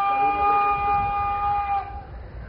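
Bugle call: one long, steady held note that dips slightly just before it stops.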